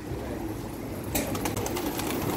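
Domestic pigeons cooing inside an open loft. About a second in, a burst of sharp wing claps and flutters as birds start flying out of the coop.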